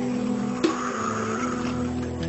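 Slow background music with held low notes; a little over half a second in, water splashes and swishes for about a second as bare feet move in a basin of water.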